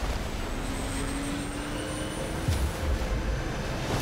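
F/A-18 fighter jet engine noise: a steady heavy rush with a whine that rises slowly, as the engines spool up. There is a short sharp knock about two and a half seconds in.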